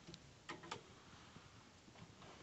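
Near silence with a few faint clicks, three of them in the first second, from hands handling the boiler's plastic control-board housing.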